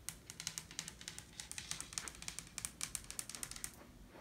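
Long acrylic fingernails tapping on a dresser top: rapid, irregular, light clicks that stop shortly before the end.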